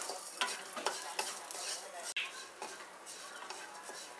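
Wooden spatula stirring moong dal as it roasts in a nonstick kadai: a steady gritty rustle of the grains, with repeated scraping strokes across the pan. The dal is being roasted until it changes colour.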